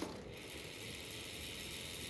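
Novatec D792SB rear bicycle hub freewheeling as the wheel spins, its four-pawl ratchet giving a faint, steady clicking. It sounds so little because of too much grease in the hub, the owner believes.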